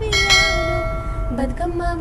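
Women singing a Bathukamma folk song, with a single bell-like metallic ring struck just after the start that rings on for over a second before fading.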